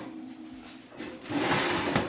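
Wire oven rack, loaded with a baking stone and enamel roasting pan, being pushed back into the oven, with a scraping rattle of metal on its runners starting about a second in and a short knock at the end.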